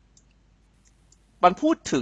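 A few faint, sharp clicks from a computer mouse while the on-screen document is scrolled, in a short pause before a man resumes speaking.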